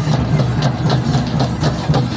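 Drum-led music for a tribal group dance: a steady low drum rhythm with regular beats, heard outdoors over loudspeakers.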